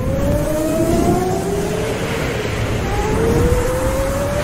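Racing-car engine sound effect revving up: the pitch rises, drops back about halfway through as if shifting up a gear, then rises again, over a low rumble.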